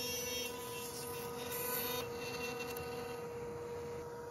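CNC router spindle running at a constant high whine while its bit cuts a hardwood tray. The tone and the hiss over it change slightly about two seconds in, as a different cut takes over.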